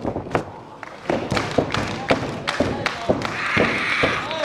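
A string of sharp thuds and slaps of pro wrestlers on the ring mat, irregularly spaced, with a woman's shout near the end.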